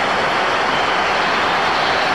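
Large football stadium crowd making a steady, loud mass of noise from thousands of voices, reacting to a shot that has just hit the foot of the post.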